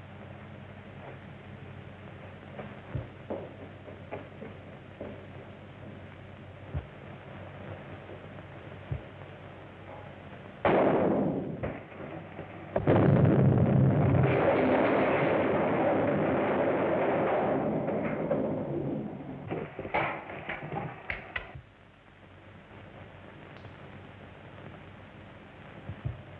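Dynamite blast in a mine tunnel: a sudden bang about eleven seconds in, then a bigger blast a couple of seconds later whose rumble lasts about five seconds before fading, followed by a few sharp cracks. Before the blast there is only a steady faint hiss with a few small knocks.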